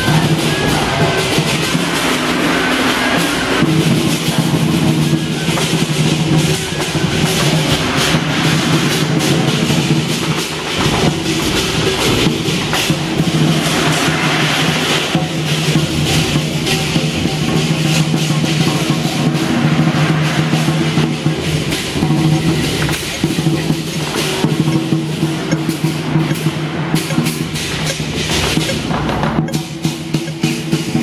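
Chinese dragon-dance percussion: drums beating continuously and rapidly, with a bright metallic clashing above them and a steady low tone held underneath.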